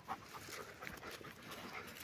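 A dog panting faintly, with light scattered ticks.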